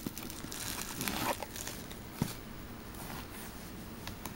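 Plastic-sleeved trading cards rustling and clicking as a hand flips through a box packed with them.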